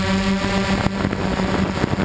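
DJI Flame Wheel F550 hexacopter's brushless motors and propellers running in flight, a steady pitched hum heard from the onboard camera. About a second in the hum turns rougher and noisier, with air rushing over the microphone.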